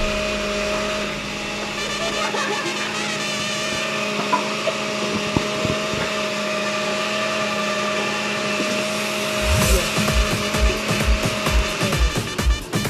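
Electric countertop blender running steadily at one speed with a constant motor whine, mixing a milky liquid drink before any ice goes in. A music beat joins near the end.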